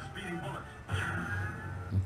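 A 1950s television show intro playing quietly from a computer: a male announcer's voice over orchestral music.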